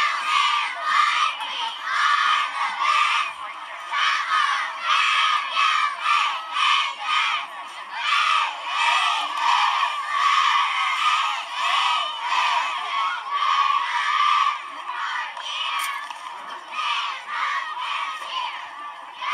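Junior cheerleading squad shouting a competition chant in unison, the words coming in short, steady rhythmic pulses. It is played back through a laptop's speakers and sounds thin, with no low end.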